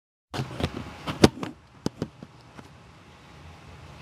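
Handling noise from setting up a webcam recording: a quick, irregular run of sharp clicks and knocks, the loudest just past a second in, dying away to faint room hiss.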